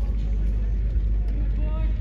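Distant voices calling out across an athletics track, over a steady low rumble.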